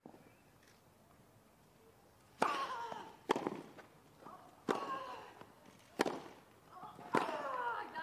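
A tennis rally on a grass court: after a quiet pause, the serve is struck and four more racket hits follow, about a second apart. Each hit is followed by a short grunt from the player.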